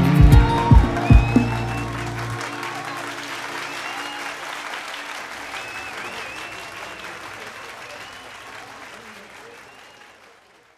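A song ends on a final chord with a few drum hits and a held bass note in the first two seconds. Audience applause and cheering follow and fade out gradually.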